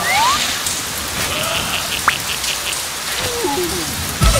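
Steady rain falling on hard pavement, with a few faint brief squeaks and a short rising chirp about two seconds in.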